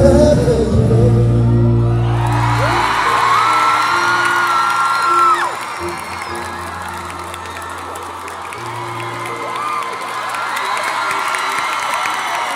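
Live pop ballad ending in an arena: the band holds the final chord under high screams and whoops from the crowd. The music drops away about five and a half seconds in, and the crowd goes on cheering.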